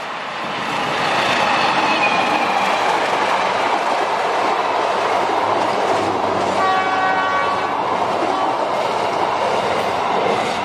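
Diesel-electric CC203 locomotive and its passenger coaches passing close by at speed through a station. The wheel and rail noise builds over the first second and then stays loud and steady. A horn sounds for about a second about two-thirds of the way through.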